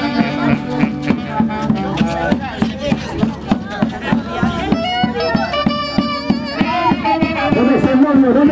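Andean orquesta típica playing a lively folk dance tune: reedy saxophones carry the melody over a steady, even beat.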